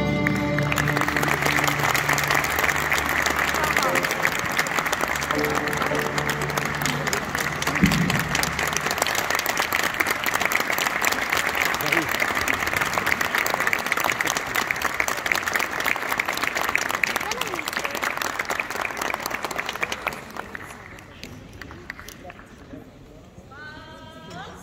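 Audience applauding steadily for about twenty seconds, then dying down. Low instrument notes from the orchestra linger under the applause for the first several seconds.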